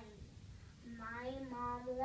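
Only speech: a young boy's voice into a microphone. A short pause, then about a second in he speaks again, stretching out a word on a steady pitch.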